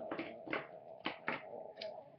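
Small plastic toys being handled and set down on a mat, about six light knocks and clicks.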